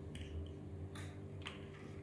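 A few faint, sharp clicks over a low, steady electrical hum, as the LED grow light is switched on from a phone app.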